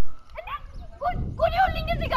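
A raised, high-pitched voice speaking in short phrases, most continuously in the second half.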